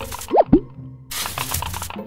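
Gritty crunching and scraping of a tiny tool digging in coarse sand and gravel, broken about half a second in by a cartoon 'bloop' sound effect: a quick pitch sweep up and down followed by a lower falling one. The crunching stops briefly after the bloop and then resumes.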